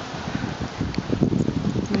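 Wind buffeting the microphone: an uneven low rumble with irregular thumps.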